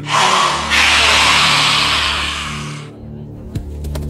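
Film soundtrack music: a loud hissing swell over low held tones that cuts off suddenly about three seconds in, followed by a few sharp clicks.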